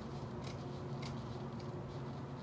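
Scissors cutting across jute upholstery webbing, a few faint short snips about half a second apart, over a low steady hum.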